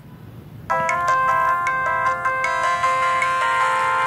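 Samsung SGH-X510 flip phone playing its power-off melody: a short electronic tune of held, overlapping notes that starts under a second in.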